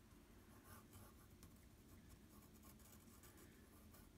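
Faint scratching of a graphite pencil sketching on watercolour paper, a run of short light strokes.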